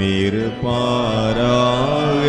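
Tamil liturgical chant of the Catholic Mass, sung by a voice over the church's sound system in long held notes that glide between pitches.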